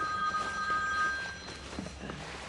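A mobile phone ringing with a steady two-tone electronic ring that stops a little over a second in.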